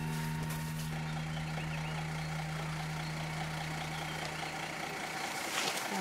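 Safari vehicle's engine idling, a steady, even hum that fades out about five seconds in, with a short sharp knock just before the end.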